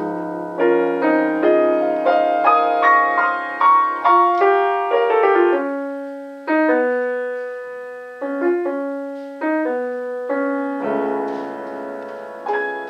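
Freshly tuned Pleyel piano played solo. A quick run of notes over held chords gives way about halfway through to slower, spaced notes that ring and fade, with a fuller chord near the end.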